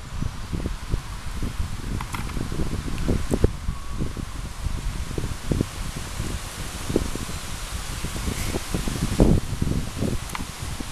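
Strong wind buffeting the microphone: a gusty low rumble that surges and drops irregularly, strongest a little after nine seconds in.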